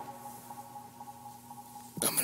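Faint tail of electronic music from an Akai MPC dying away: a few quiet held synth tones linger after the sequence playback stops.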